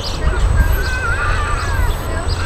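High-pitched wavering voices over a low, steady rumble.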